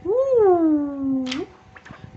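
A domestic cat meowing once, a long call that rises, then slides down and holds a lower pitch before breaking off.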